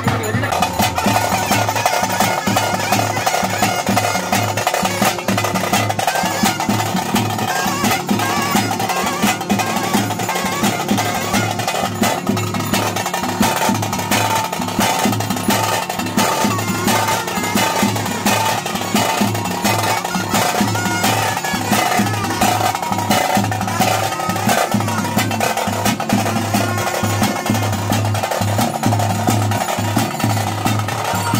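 Traditional daiva kola ritual drumming: a drum ensemble plays fast, continuous beats, with a sustained tone held underneath.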